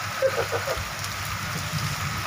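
Steady heavy rain falling on the ground and on metal structures, a continuous hiss, with a faint voice in the first second.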